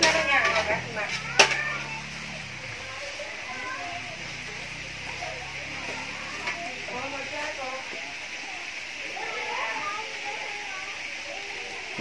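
Faint background conversation of several people over a steady hiss. A low hum comes and goes, and there is a single sharp click about a second and a half in.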